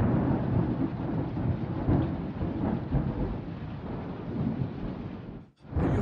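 Sound-effect rumble, continuous and heavy with a rushing hiss over it, in the manner of a thunderstorm. It starts suddenly as the music stops and breaks off for a moment near the end before resuming.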